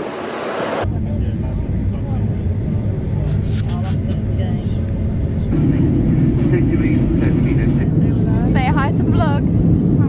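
Jet airliner engine noise heard from inside the passenger cabin, a steady low rumble that steps up louder about halfway through. Near the end a voice briefly rises and falls over it.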